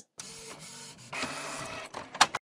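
Printer printing and feeding out a page: a steady mechanical whirr that starts just after the beginning and steps up louder, with a thin high whine, about halfway through.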